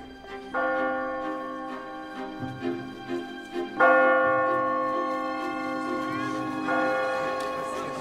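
Large bronze church bell, rung by pulling its rope, tolling three slow strokes. The second stroke is the loudest, and each one hums on at several pitches while the next comes in. In this scene the tolling is the bell's signal that the Pope has died.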